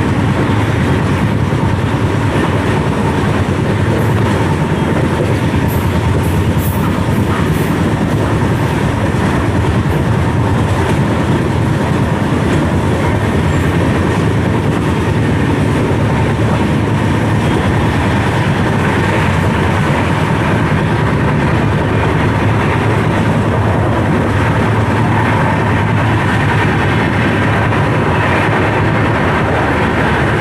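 Sarnath Express passenger coach running at speed, heard through an open doorway: the loud, steady running noise of wheels on the track.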